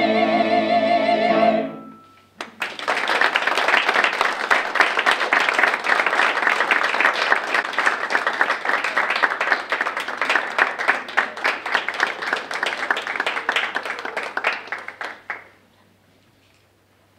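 A mixed choir holds its final chord, with vibrato, and cuts off cleanly about two seconds in. After a brief hush, the audience breaks into applause that lasts about thirteen seconds and then dies away.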